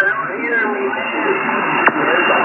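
Radio transceiver's speaker playing distant stations calling at once, their voices overlapping and half-buried in static, with the narrow, thin sound of received radio audio. A sharp click comes near the end.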